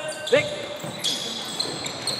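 Basketball game on an indoor hardwood court: a ball bouncing and thin high squeaks in the second half, echoing in the gym, with a short shout of "Big" just after the start.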